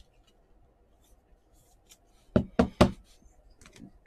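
Faint handling of trading cards with small clicks, then three quick sharp knocks about two and a half seconds in, as cards are handled and knocked against the table.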